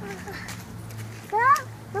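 A child's short vocal sound rising in pitch, about one and a half seconds in, over a low steady hum.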